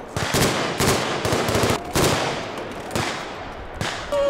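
Gunfire from blank-firing WWII-era guns: a string of single shots and short bursts, roughly one or two a second, each with an echo.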